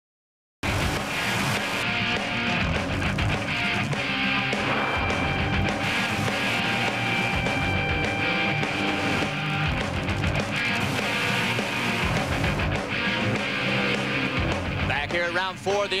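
Half a second of silence, then broadcast theme music cuts in suddenly and plays on steadily; a man's voice comes in over it near the end.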